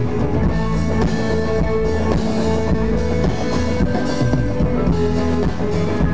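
A live band playing an instrumental passage, guitars over a drum kit, through a stage PA, heard from the crowd.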